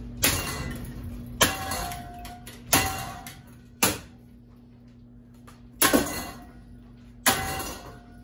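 A long metal pole striking a metal ceiling fan motor housing: six hard clanking hits at uneven intervals, the fifth a quick double hit, each ringing briefly.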